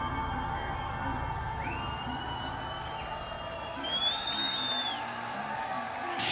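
Ambient synthesizer drone of a rock band's live intro, with the concert audience cheering and whistling; a long high whistle rises about one and a half seconds in and a louder one sounds about four seconds in.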